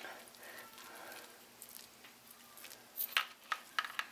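Hands massaging oiled, seasoned raw steaks in a dish: faint wet squishing of oily meat, with a few short sharp smacks and clicks about three seconds in.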